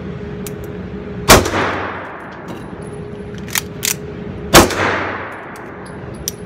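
Two 9mm shots from a Springfield Armory Range Officer 1911 pistol, about three seconds apart, each ringing out with a long echo in the indoor range. Between them come two sharp metallic clicks of the slide-lock reload, the magazine changed and the slide sent home.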